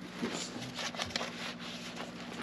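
Light, irregular rustling and crinkling as a small plastic electronic device and its coiled wires are handled, its adhesive backing being readied, over a faint steady low hum.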